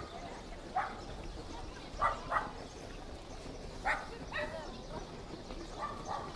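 A dog barking faintly: about seven short barks at uneven intervals.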